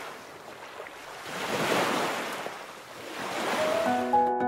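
Rushing water like surf and spray, a steady hiss that swells up twice and eases between. Music comes in just before the end.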